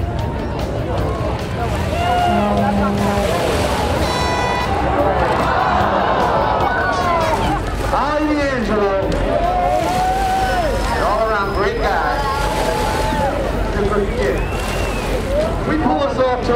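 A large outdoor crowd shouting, calling and whooping, many voices overlapping, over a steady low rumble.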